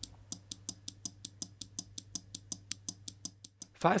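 Songle SRD-05VDC-SL-C 5 V relay clicking rapidly and evenly, several clicks a second, as a 555 timer oscillator's output switches it on and off to flash an incandescent bulb. The clicking stops just before the end.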